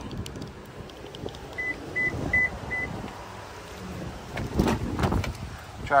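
Four short, evenly spaced high beeps from a 2010 Toyota Prius as it is unlocked with its key fob, about a second and a half in. Near the end come a few clunks as the driver door is opened.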